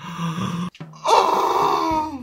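A woman gasps, then about a second in lets out a loud, drawn-out high cry that slides down in pitch at the end, in shock at having just cut off her pigtail with scissors.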